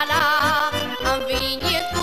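Romanian folk song: a wavering melody with strong vibrato over a steady low beat of about four a second.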